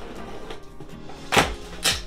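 Cardboard box of a humidifier being opened by hand: two short, sharp cardboard noises a half-second apart, over steady background music.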